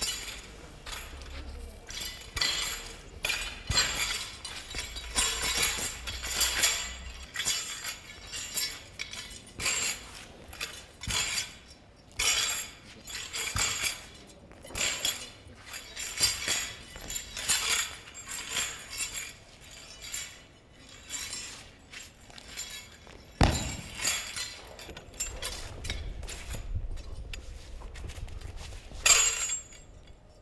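A Wudang monk spade being swung and spun, its metal blade and hanging metal rings clinking and jangling in quick, irregular bursts. There is one sharp thump about two-thirds of the way through.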